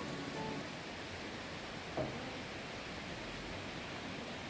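A steady, even hiss. The last notes of background music die away in the first half second, and a faint short sound comes about two seconds in.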